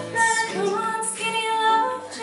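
A woman singing a held melodic line, with other voices in harmony underneath.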